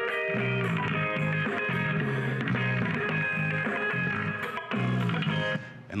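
Guitar music with a pulsing bass line played through the small speaker drivers of a Bose Wave music system, fitted with twin waveguide tubes. The music cuts off just before the end.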